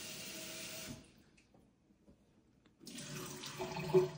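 Water from a pull-down kitchen faucet running into a stainless steel sink as something is rinsed under it. The water stops about a second in and starts again near the end, with a short knock at the very end.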